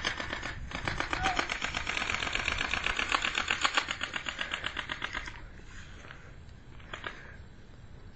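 Small single-cylinder dirt bike engine running with a rapid, even ticking beat, louder for a few seconds and then fading away about five seconds in.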